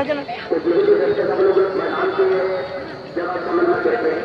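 A man's voice, the match commentator, drawn out in long held notes rather than quick talk.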